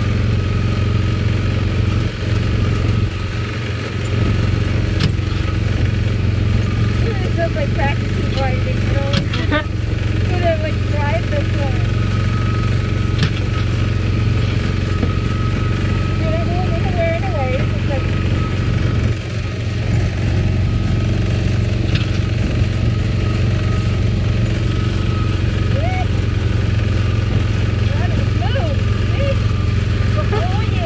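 Small gasoline engine of a Tomorrowland Speedway car running steadily under throttle, heard from the driver's seat, easing off briefly twice.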